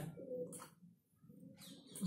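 Faint, low bird calls: two short stretches of a steady low tone, one at the start and one in the second half.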